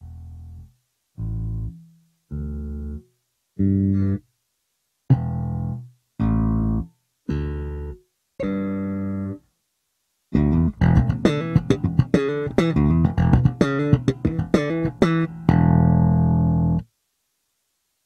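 Electric bass guitar played as a level check while the interface's AutoSense sets the input gain. Eight separate notes, each cut short with a gap after it, are followed a little after ten seconds in by a fast, busy riff of about six seconds that stops suddenly.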